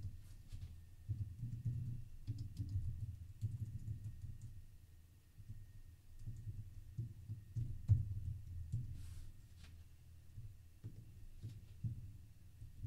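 Computer keyboard typing: irregular runs of dull, low keystroke thuds with a few lighter clicks, pausing briefly about halfway through.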